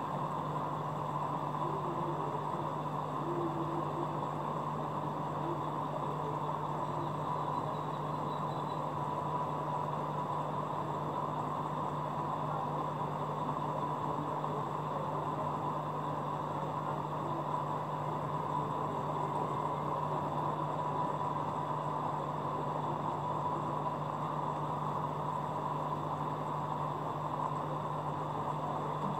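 Aquarium pump running steadily: a constant low hum with a faint high whine over an even hiss.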